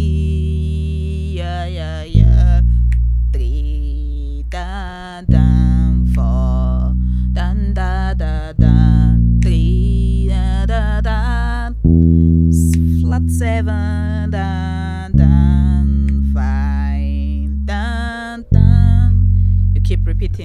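Electric bass guitar playing long, low, ringing notes, a new note struck about every three seconds and left to die away, working through a worship song's chord progression. A woman sings the melody over it.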